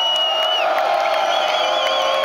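Crowd cheering just after a song ends, with long shouted whoops and a warbling whistle over the noise.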